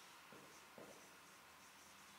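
Faint marker pen strokes on a whiteboard: a few short scratches, otherwise near silence.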